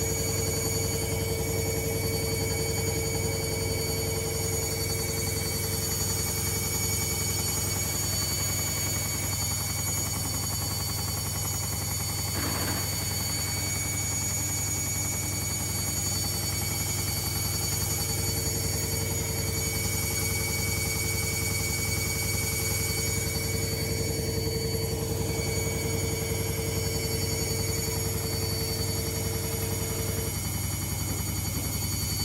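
Logik L712WM13 front-loading washing machine on its spin cycle, the drum turning at a steady speed: a constant motor and drum whine over a low hum. A mid-pitched whine fades for several seconds partway through and comes back, and there is one faint tick about twelve seconds in.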